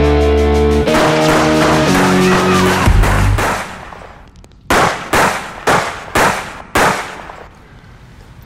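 Rock music with guitar chords fades out about three and a half seconds in. Then come five sharp pistol shots, about half a second apart, each with a short ringing tail.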